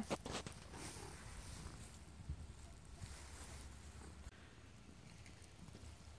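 Faint rustling and a few soft taps from a hand petting a cat lying in the grass.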